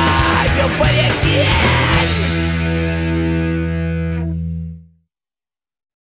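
Punk rock band with distorted electric guitar finishing a song: the full band plays for about two seconds, then the final chord is held and rings out. It fades and stops about five seconds in.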